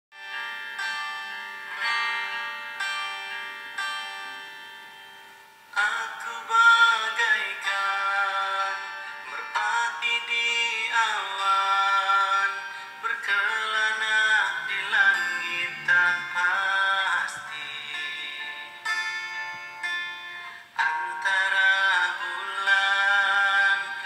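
A pop song playing. It opens with held instrumental chords that pulse about once a second and fade, and a singing voice comes in with the accompaniment about six seconds in.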